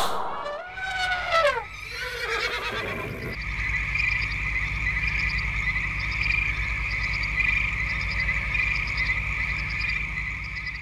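End-card sound design of animal calls: a sharp hit at the very start, a gliding, whinny-like call about a second in, then from about three seconds a steady frog-like croaking chorus over an even low pulsing rhythm.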